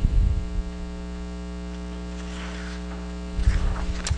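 Steady electrical mains hum on the recording, with low bumps of microphone handling noise in the first half second and again shortly before the end.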